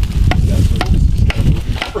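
A blade striking a length of green bamboo about twice a second, sharp cracks over a crackling, low rumble.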